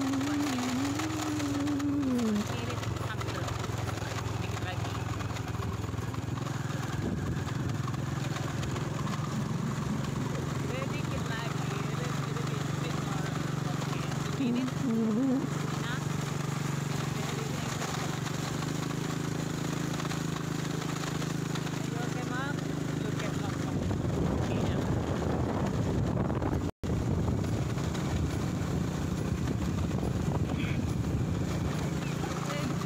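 Small motorcycle engine running at a steady road speed, with wind noise over it; the engine note shifts slightly about a quarter of the way in and again past halfway.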